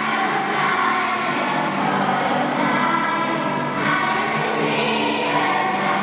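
Children's choir singing, the voices ringing in a large church.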